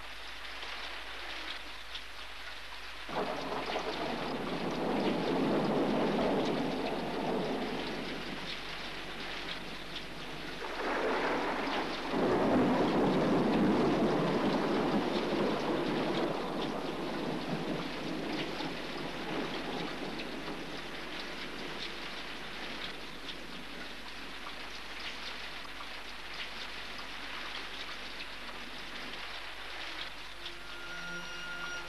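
Steady rain, with two long rolls of thunder: the first begins suddenly about three seconds in, and the second, louder one about eleven seconds in, fading slowly.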